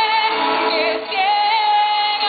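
Live female lead vocal singing long, wavering held notes into a microphone over music accompaniment, with a short break in the line about a second in.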